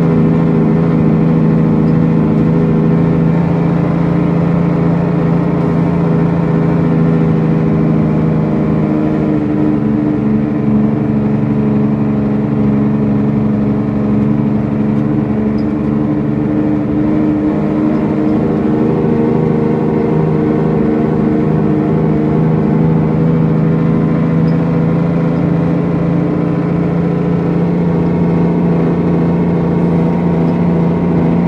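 Diesel engine of an International 9900ix truck heard from inside the cab while driving, a steady low drone that holds a nearly even pitch.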